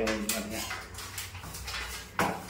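A short spoken word, then faint clicks and light clatter from a rotary drill and its metal core bit being handled, over a steady low hum.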